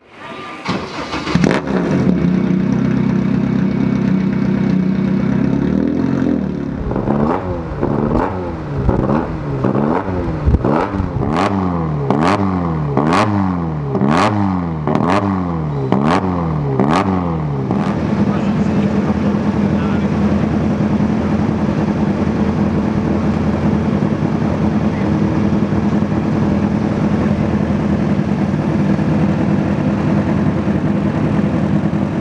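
Racing car engine running, then blipped on the throttle about a dozen times, roughly one quick rev a second, before settling back into a steady idle.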